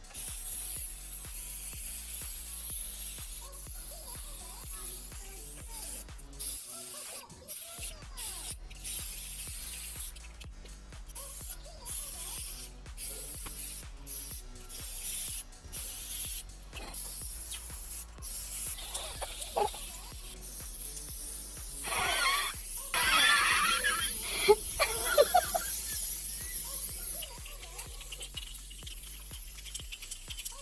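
Aerosol can of chalk spray paint hissing in repeated bursts with short breaks, over background music; laughing and squealing become louder about three-quarters of the way through.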